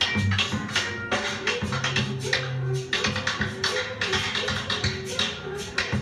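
Live ska band music: a steady beat of drums and percussion over a held bass line and melodic instruments.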